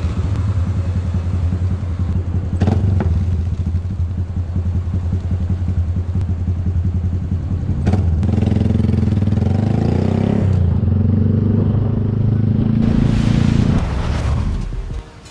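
Motorcycle engine idling with a steady low note; about eight seconds in it is revved, the pitch rising for a couple of seconds before settling back to a louder, rougher idle.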